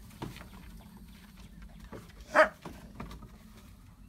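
A dog barks once, short and sharp, about two and a half seconds in, during rough play between dogs. A few lighter taps and scuffles come before and after it.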